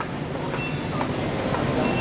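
Steady low rumbling store background noise that grows slightly louder, with no speech over it.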